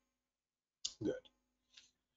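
Silence broken about a second in by a short click and a man saying the single word "good".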